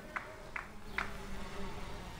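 Faint steady low buzz, with three faint short ticks in the first second.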